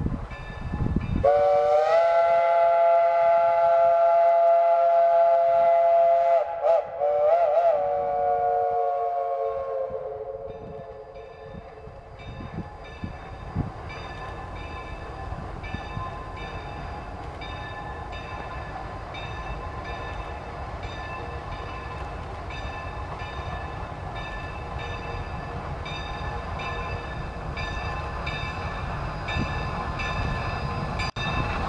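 Chime steam whistle of Shay geared steam locomotive No. 5: one long chord blast starting about a second in, then a couple of short warbling toots, sagging in pitch as it dies away. Then the locomotive's exhaust and running gear, growing slowly louder as it approaches.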